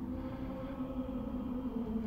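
Background music of long, sustained tones that change pitch slowly, over a low rumble.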